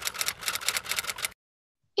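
Typewriter sound effect: rapid mechanical key clacks, about ten a second, that stop suddenly a little over a second in.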